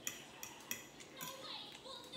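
Metal forks tapping and scraping on dinner plates while eating, with a few light clicks.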